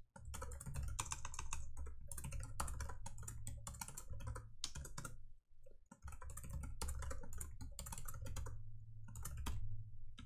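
Computer keyboard typing: quick runs of keystrokes with a brief pause about halfway through.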